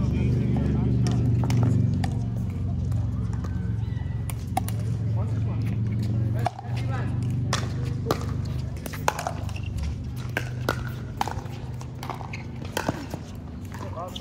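Pickleball paddles hitting a plastic ball: irregular sharp pops during a rally, over a steady low hum, with a brief drop-out about halfway through.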